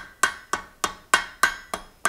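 Hand hammer tapping red-hot steel on the horn of an anvil: light, quick taps about three a second, each with a short metallic ring. These are finishing taps shaping the hot iron of a forged turkey-foot poker.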